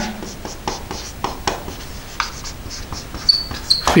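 Dry-erase marker writing on a whiteboard: a run of quick scratchy strokes, with two short high squeaks of the felt tip near the end.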